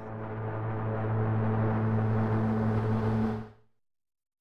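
Low, steady synthetic drone of an animated logo sting, swelling in over the first second, holding, then fading out quickly about three and a half seconds in.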